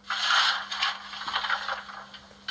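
Coal-shovelling sound effect from the Märklin 39009 BR 01 model locomotive's mfx+ sound decoder, played through the model's small loudspeaker: a shovel scraping through coal. It is one long, uneven scrape that fades near the end.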